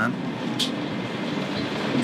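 Cabin noise inside a moving local bus: the engine's steady hum and road noise.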